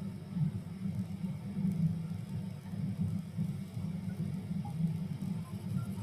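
Low, steady rumbling background noise on a video-call audio line, with no speech.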